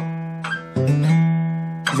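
Steel-string acoustic guitar (a K.Yairi) sounding single notes: a ringing note fades, a light new note comes in about half a second in and a louder one just after, which rings and slowly fades.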